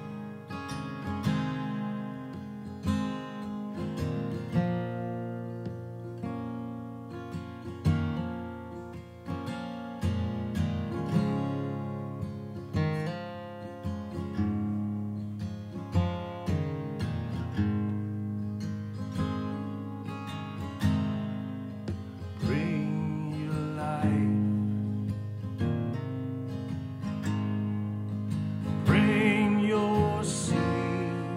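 Solo acoustic guitar playing a song's introduction, notes ringing together with a regular accent every second or two. A voice starts singing near the end.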